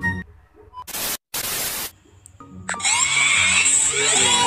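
Two short bursts of loud static hiss about a second in, split by a brief drop to silence. Music starts just before the three-second mark and carries on as the loudest sound.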